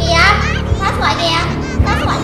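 A young woman's voice speaking quickly and unusually high-pitched, over background music.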